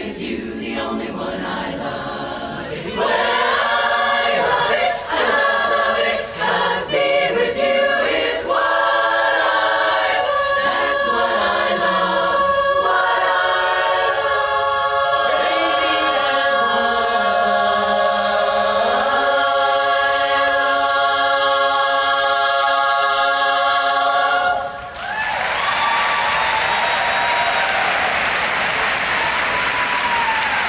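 Women's barbershop chorus singing a cappella in close harmony, building to a long held final chord that cuts off sharply about 25 seconds in. Audience applause follows.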